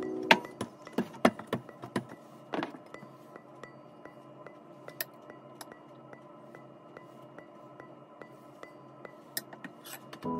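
Wooden rolling pin knocking and rolling on a floured countertop, a quick series of knocks in the first two seconds. Later come a scrape and a few light clinks of a metal spoon in a bowl of mung bean filling. Faint background music plays throughout.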